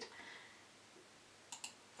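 Near silence with faint room hiss, broken by two quick, faint clicks about a second and a half in.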